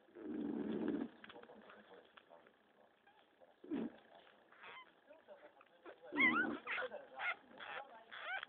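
Puppy play-biting and chewing a person's hand, making short low growls and squeaky, wavering yelps, a cluster of them about six seconds in.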